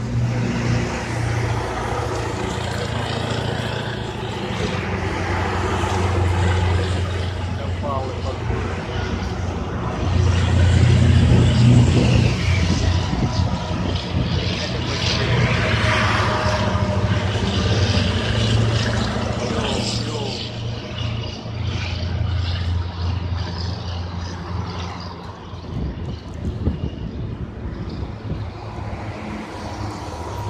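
A column of heavy military trucks driving past one after another, their diesel engines and tyres making a continuous low drone that is loudest about ten to twelve seconds in.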